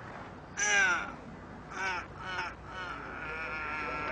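Strained vocal cries of effort: one louder, arching cry about half a second in, then three shorter ones.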